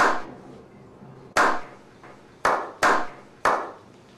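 Slow clap: single hand claps, each with a short ringing tail, spaced well apart at first and then coming quicker, about three a second near the end.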